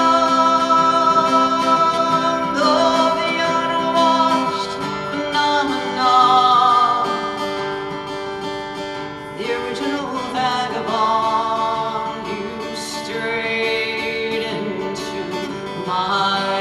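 A woman singing a slow folk ballad, accompanying herself on a strummed acoustic guitar.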